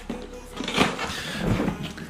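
Cardboard box of a cupping set being opened: the lid is lifted off and the packaging handled, with irregular light rustles and knocks.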